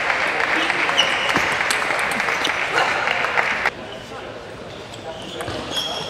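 Crowd noise in a sports hall, a dense mix of applause and chatter after a table tennis point, cut off abruptly a little over halfway through. Then the quieter hall follows, with a few sharp clicks of a table tennis ball bouncing.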